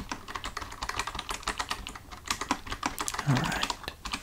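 Computer keyboard typing: fast, irregular keystroke clicks close to the microphone, with a short lull about two seconds in. About three seconds in there is a brief low vocal hum that falls in pitch.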